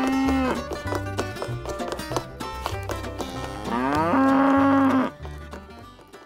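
A cow mooing twice: a call that rises in pitch and then holds, ending about half a second in, and a longer, louder one from about three and a half to five seconds. Plucked-string music plays underneath and fades near the end.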